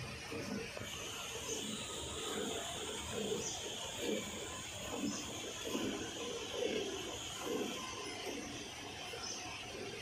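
Hand-milking a cow: jets of milk squirting rhythmically from the teats into a steel bucket partly filled with frothy milk, roughly one squirt a second, over a steady high hiss.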